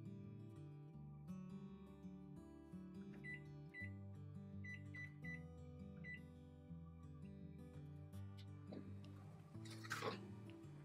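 Background music playing throughout, with six short high electronic beeps from a microwave keypad between about three and six seconds in as a timer is set.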